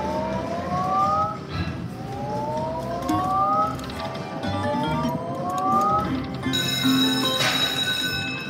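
Slot machine spinning its reels: three rising electronic glides, one for each spin about every two seconds. Near the end a bright, held chime sounds as a small win registers.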